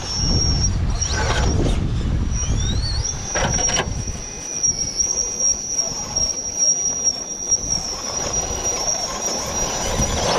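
Radio-controlled rock crawler's electric motor and gears whining at one high, steady pitch as it crawls over rock, the pitch sliding up briefly about three seconds in. A few knocks of tyres and chassis on the stone are heard, with a low rumble during the first few seconds.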